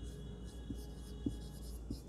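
Marker pen writing on a whiteboard: faint stroke sounds with a few light taps as letters are formed.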